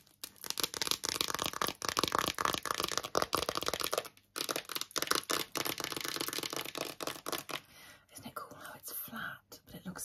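Long acrylic nails tapping and scratching quickly on a phone case: a dense run of fast clicks and scrapes with a brief pause about four seconds in, thinning out near the end.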